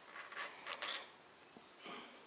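Light metal clicks and rattles of a roller rocker arm being handled and lifted off its stud on a small-block Chevy 350 cylinder head, a few sharp ticks falling within the first second.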